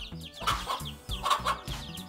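Chickens calling: a hen clucking and her chicks peeping with many short, falling cheeps.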